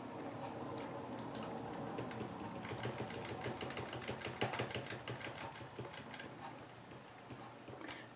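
Rapid run of small clicks from a computer mouse's scroll wheel as a document is scrolled down, densest in the middle, over a low steady hum.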